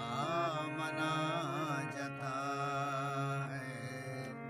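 Harmonium sustaining steady held notes while a man sings a long, wavering, melismatic phrase over it; the voice drops out near the end and the harmonium carries on.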